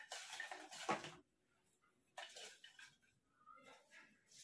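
Hand rummaging among folded paper slips in a bowl: a short rustle with a light knock about a second in, then only faint brief sounds.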